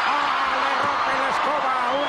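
A raised voice held in long drawn-out notes over the steady noise of an arena crowd.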